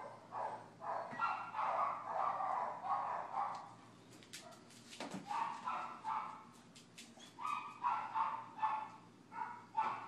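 A dog barking in quick repeated barks, several a second. The barking pauses for about two seconds in the middle, where a few sharp clicks are heard, then starts up again.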